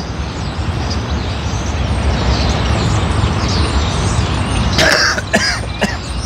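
A man coughing and clearing his throat a few times near the end, over a steady low rumble. He has just drunk a fizzy energy drink and blames the bubbles.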